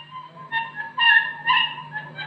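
Live Khowar folk music: a melody instrument plays short notes about half a second apart over a steady low hum.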